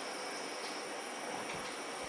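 Steady background hiss with a few faint, high, steady tones: the room tone of the recording, with no distinct event.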